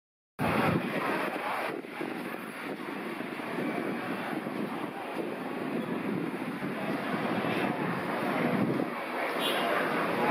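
Seaside outdoor ambience: a steady rush of wind on the microphone mixed with the drone of distant boat engines. It begins abruptly a moment in, after a brief silence.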